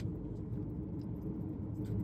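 Steady low hum of a car heard from inside the cabin.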